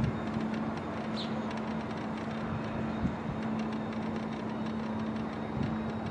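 Steady low hum and road noise of a slowly moving vehicle, with a short high bird chirp about a second in.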